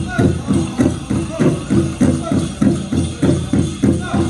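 Powwow drum group playing a chicken dance song: a big drum struck in a steady fast beat, about three strokes a second, under high-pitched group singing.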